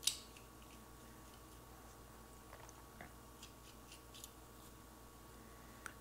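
Small metal airbrush parts being handled: a sharp click at the start, then scattered faint ticks as the rear handle comes off and the trigger spring guide is turned by hand.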